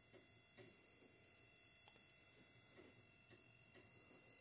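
Near silence: room tone with faint steady high-pitched tones and a few faint ticks.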